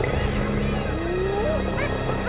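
Spotted hyenas calling while mobbing a lioness: several rising, gliding calls about halfway through, with higher squeals over a steady low background.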